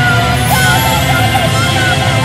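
Loud rock music with a sung vocal line over a steady beat, and a cymbal crash about half a second in.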